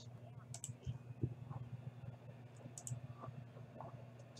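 Faint, scattered clicks of a computer mouse and keyboard over a steady low hum.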